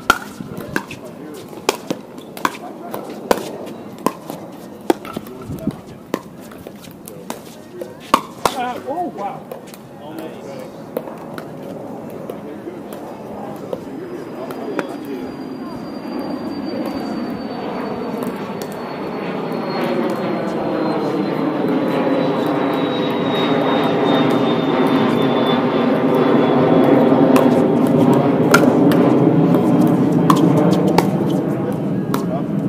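Pickleball rally: a string of sharp pops from paddles striking the plastic ball, through the first nine seconds or so. Then an airplane flying over grows steadily louder, its engine noise carrying a slowly falling whine, loudest near the end.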